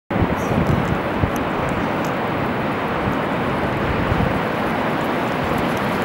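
Wind buffeting the microphone in irregular low gusts, over a steady rush of ocean surf.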